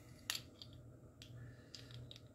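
Small metallic clicks of a spring-loaded crowfoot wrench handled on a bolt: one sharp click about a third of a second in, then a few fainter ones.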